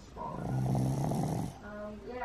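A small shaggy dog lying asleep on its back, snoring: one low snore lasting about a second and a quarter, starting just after the start.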